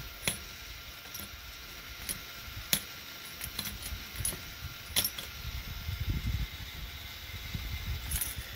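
Half-dollar coins clinking against one another and the plastic tray as a K'nex coin pusher shoves them forward: a run of sharp metallic clinks at irregular intervals, roughly one a second, with a low rumble in the second half.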